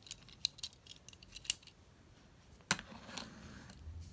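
Small sharp clicks and taps from a diecast toy plane being handled, its little landing-gear doors snapping open, with two louder clicks about one and a half and two and three-quarter seconds in as it is put down on a toy runway.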